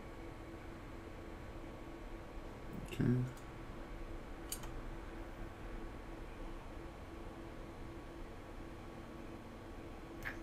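Quiet room tone with a steady low hum, broken by a couple of faint computer mouse clicks, the clearest about four and a half seconds in.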